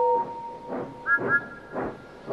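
Steam locomotive sound effects: steady chuffing about twice a second under a whistle. The lower whistle fades out about a second in, as a higher two-note whistle sounds.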